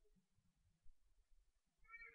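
Near silence: faint room tone, with a faint, brief pitched sound just before the end.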